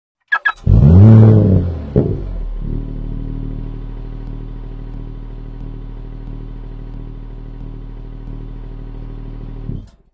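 Engine sound effect: two sharp clicks, then one rev that rises and falls in pitch, settling into a steady idle that cuts off suddenly near the end.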